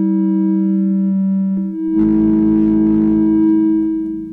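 Ciat Lonbarde Sidrax and Cocoquantus analog synthesizers, played by fingers on their metal touchplates. They sound two steady, sustained organ-like tones. About two seconds in, the lower note shifts and a hissy noise rises over the tones, and the sound begins to fade near the end.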